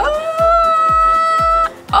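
A woman's long, high, held "uhhh" on one steady pitch, lasting about a second and a half and breaking off sharply near the end. Under it runs background music with a steady drum beat.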